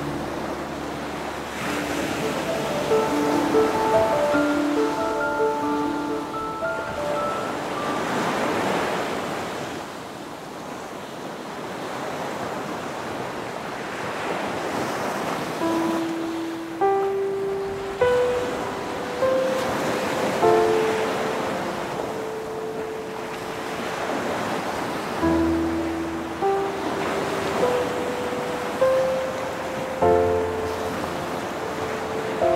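Ocean surf breaking on a rocky beach, the rush of water swelling and fading every several seconds. Soft instrumental music plays over it in slow, held notes.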